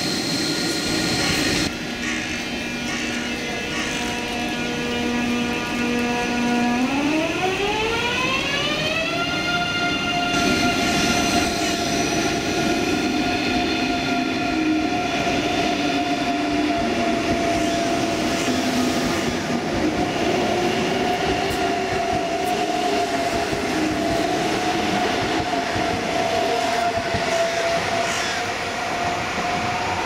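ICE 3 high-speed train pulling away from the platform, its electric traction drive whining as several tones together. About seven seconds in the whine rises steeply in pitch over a couple of seconds as the train gathers speed, then holds nearly steady over the rumble of the moving train.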